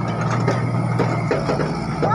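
Tracked hydraulic excavator's diesel engine running steadily, with a few sharp clicks and clanks from the boom and bucket as it digs into soil.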